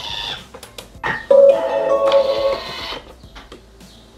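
Electronic signal tones from a Thermomix TM6 food processor: a brief tone at the start, then a loud, steady held chime about a second in that lasts over a second, with a higher note joining partway, then fades.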